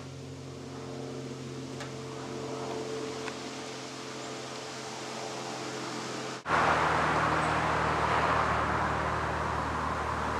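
Jet aircraft passing overhead: a steady hum under a faint rushing roar. About six and a half seconds in the sound drops out for an instant and returns with a much louder rushing roar over the hum.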